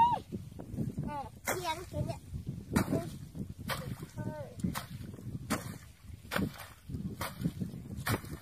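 A long-handled digging tool chopping repeatedly into a muddy paddy bank, sharp strikes about once a second.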